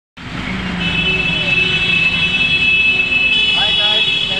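Indistinct voices in the background over a steady high-pitched whine.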